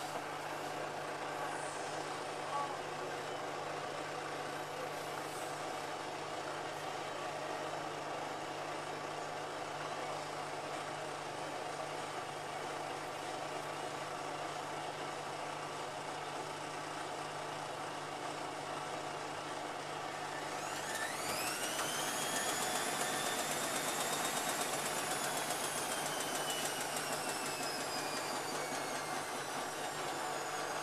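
Whirlpool AWM5145 front-loading washing machine on its spin cycle: the drum and motor run with a steady hum. About two-thirds of the way through, a whine rises sharply as the drum speeds up, then holds and slowly falls.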